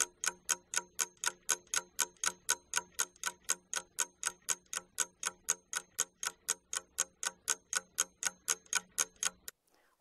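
Ticking-clock timer sound effect: rapid, even ticks that stop shortly before the end, counting down the time given to answer an exercise.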